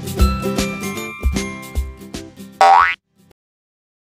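Upbeat children's background music with a steady bass beat. About three seconds in, it ends on a quick rising cartoon-style sound effect and cuts off.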